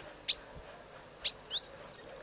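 Wild birds calling: three short, high-pitched calls, one near the start and two close together past the middle, the last sweeping upward.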